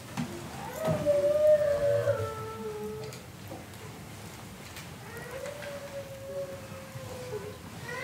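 A high, drawn-out voice with two long wavering notes, the first about a second in and the second about five seconds in, each sagging slowly in pitch at its end.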